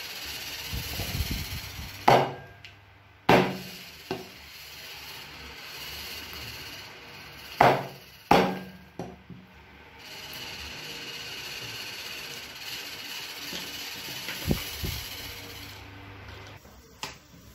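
Cleaver chopping eels on a thick round wooden chopping block: four sharp, heavy strikes in two pairs, about two and three seconds in and again near the middle, with a few lighter knocks between.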